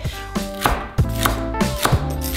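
Chef's knife chopping celery on a cutting board: several sharp, irregularly spaced chops of the blade through the stalks onto the board.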